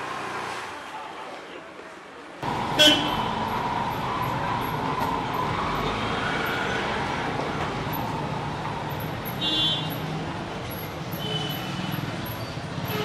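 Busy street traffic noise with vehicle horns honking: a short, very loud honk about three seconds in, another honk around nine and a half seconds, and a brief beep near the end.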